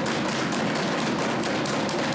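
Legislature members thumping their desks in approval: a dense, even patter of many quick hand strikes on wooden desks, loud and without a break.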